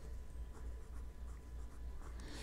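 Pen writing numbers on lined notebook paper: faint, light scratching strokes.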